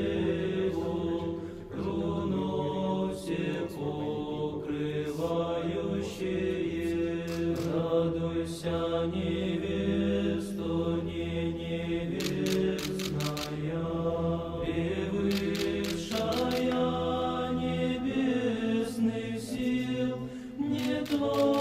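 Choral chant sung over a long-held low drone. Quick camera shutter clicks sound through it, in clusters about two-thirds of the way in and near the end.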